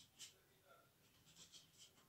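Faint fingertip taps and flicks on a smartphone's glass touchscreen: two quick ticks near the start and a cluster of four or five about halfway through.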